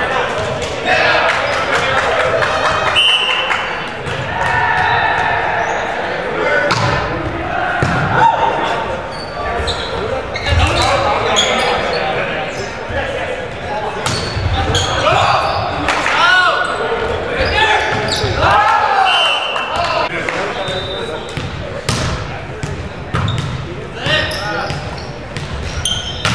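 Indoor volleyball play echoing in a gymnasium: players' shouts and calls, sharp hits of the ball being served, passed and spiked, and sneakers squeaking on the hardwood floor.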